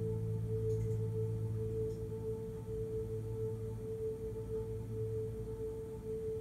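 Electronic keyboard holding one sustained, bell-like synthesizer note over a low hum, wavering slightly and slowly fading.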